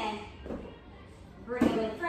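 Dumbbells set down on a floor mat, with a dull thud about half a second in and a sharper knock near the end. A woman's voice is heard briefly alongside.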